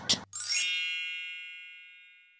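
A single bright bell-like ding, struck about a third of a second in and ringing down slowly over nearly two seconds.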